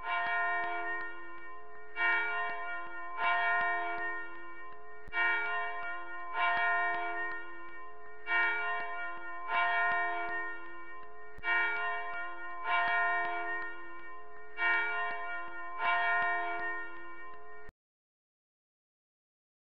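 A church bell ringing: about eleven strikes in pairs, each ringing on into the next, until the sound cuts off suddenly near the end.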